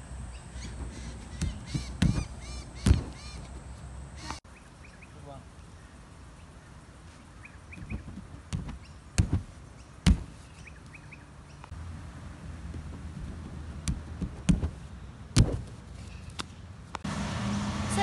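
Hands and feet thudding on an inflatable air track as a gymnast tumbles along it, the thuds coming in loose clusters of several strikes. Birds call faintly in the background.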